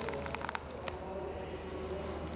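Steady low background hum with a faint haze of noise and a few light clicks in the first half-second.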